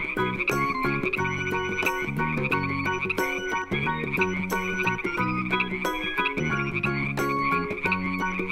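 Background music with a rhythmic bass line, overlaid with a frog chorus: a continuous, fast-pulsing trill of frog calls.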